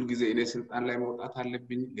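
Speech only: a man talking in Amharic.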